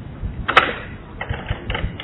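A brief pause in a man's talk, filled with a few faint clicks and small knocks, the sharpest about half a second in.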